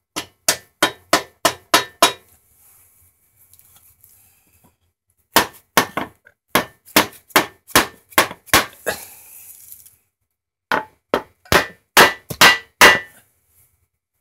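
Hammer blows through a block of wood, driving a new steel outer bearing race into an exercise bike's pulley bearing housing. The blows come in three quick runs of about four strikes a second, with pauses between, and the last run is the loudest.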